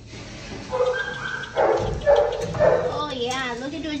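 Dog barking and yipping: several short barks about half a second apart.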